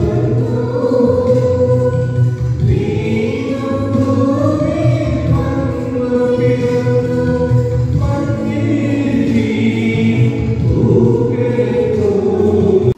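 Christian choral music: a choir singing a hymn in sustained notes over a steady low accompaniment.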